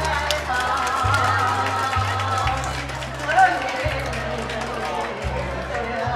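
A woman singing into a handheld microphone over a karaoke backing track, with a low bass line that changes note every second or so.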